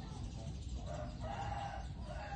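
A chicken calling: one drawn-out call that starts a little under a second in, heard over a steady low rumble.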